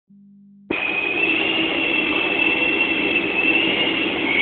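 Car running at steady speed on a chassis dynamometer: a steady drone with a high whine over it, starting abruptly under a second in.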